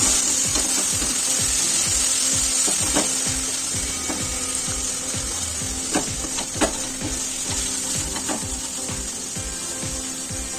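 Wooden spatula pressing and scraping cooked tomato and onion masala against a nonstick kadai to mash the tomatoes, in quick repeated strokes over a steady sizzle. Several sharp taps of the spatula on the pan come in the second half.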